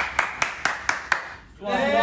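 Several people clapping their hands in a steady rhythm, about four claps a second, stopping a little over a second in. Voices come back in near the end.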